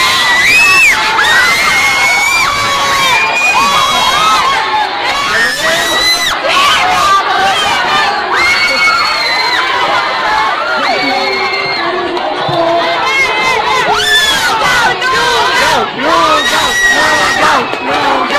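A crowd of teenage students shouting, shrieking and cheering excitedly all at once, many high voices overlapping.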